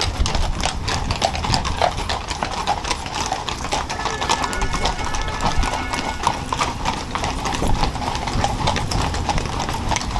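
Many horses walking in procession on cobblestones: a steady stream of overlapping hoof clip-clops.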